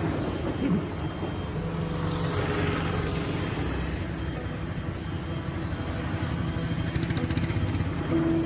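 Road traffic: a motor vehicle's engine running as it passes, a steady low hum with a wash of road noise that swells a little around two to three seconds in.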